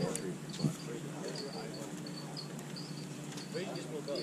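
Insects chirping in the background: short high chirps repeating irregularly, with faint distant voices and a brief sharp sound about half a second in.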